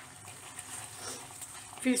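Faint, even sizzle of mashed boiled potato frying in desi ghee in a kadhai, a woman's voice starting near the end.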